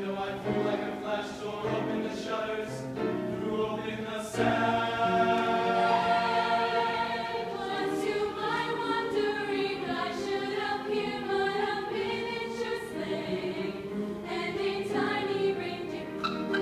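Mixed choir of young voices singing in harmony with grand piano accompaniment, getting louder about four seconds in.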